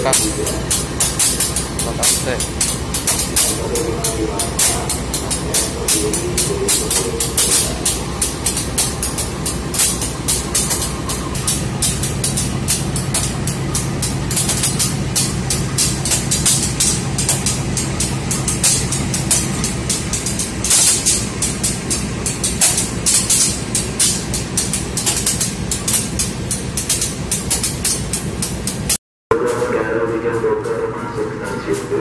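CC 201 diesel-electric locomotive running close by as it moves slowly past, its engine giving a dense, rapid beat. A steady low hum joins in for several seconds mid-way. The sound cuts out briefly near the end.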